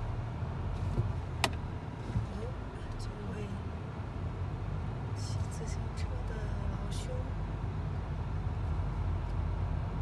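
Steady low road and engine rumble heard inside a car's cabin as it drives slowly along a street, with one sharp click about a second and a half in.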